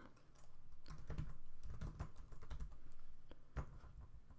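Computer keyboard typing: a quick, irregular run of keystroke clicks as a word is typed.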